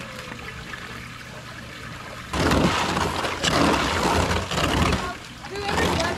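Water splashing and sloshing in a gem-mining sluice, quiet at first, then a louder, irregular spell of splashing from about two seconds in and a short burst near the end.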